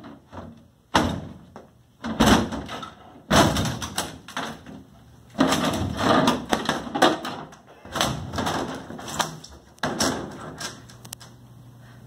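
Kicks banging against the thin wooden back panel of a built-in bookshelf as it is forced loose, about half a dozen hard blows, each trailing off over a second or so.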